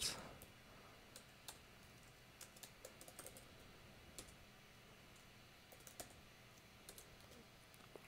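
Faint, irregular keystrokes on a computer keyboard: a dozen or so scattered clicks as a short command is typed.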